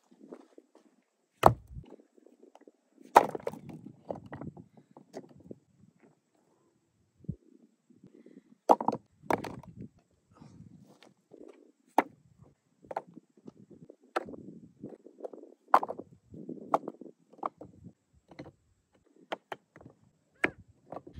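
Rocks knocked and set down onto a dry-stacked rock wall: about a dozen sharp stone-on-stone clacks at uneven intervals, with scuffing footsteps on rocky ground between them.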